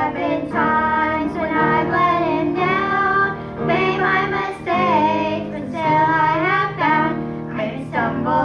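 A girl and a woman singing a gospel song together into microphones, in phrases of a second or two, over sustained instrumental backing.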